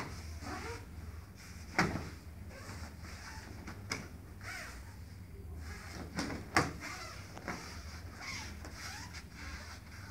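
Bodies landing on foam mats during aikido throws and breakfalls: two sharp thuds, about two seconds in and again past six and a half seconds, with lighter thumps and scuffing of feet and cloth between.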